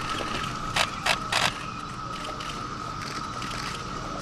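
Three sharp clicks in quick succession about a second in, over a steady high-pitched hum.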